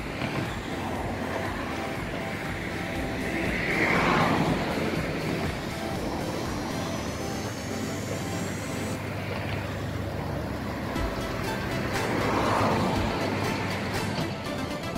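Background music layered over a Siemens Desiro diesel multiple unit running slowly past close by, with swells in loudness about four seconds in and again near the end.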